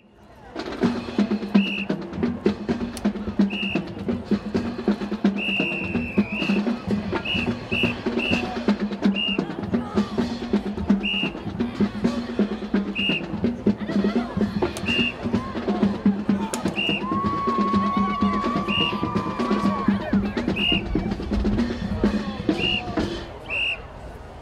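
Marching band drumline playing a cadence, with snare and bass drums in a continuous beat and short high notes recurring every second or two over it.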